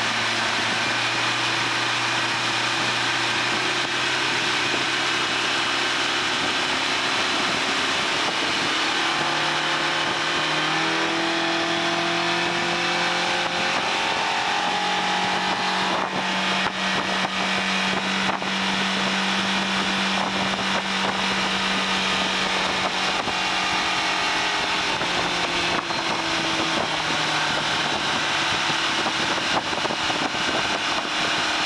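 Yamaha 130 hp four-stroke outboard driving a planing boat: its note climbs as the revs rise about a third of the way in, then holds steady at high revs and eases slightly near the end. A steady rush of wind and water runs underneath.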